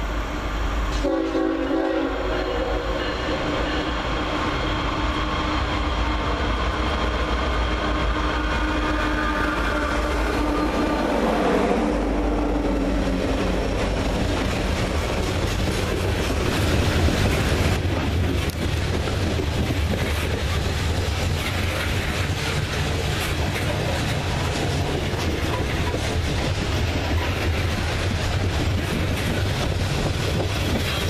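Diesel freight locomotive's horn sounds for about ten seconds as the train approaches, its pitch dropping as the engines pass. Then loaded coal hopper cars roll by with a steady wheel rumble and clicking over the rail joints.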